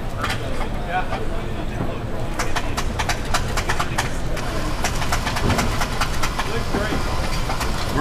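Steady low hum and background chatter of a busy exhibition hall, with a run of light metallic clicks and clinks about two to four seconds in as a French press's metal lid and plunger are fitted onto its glass carafe.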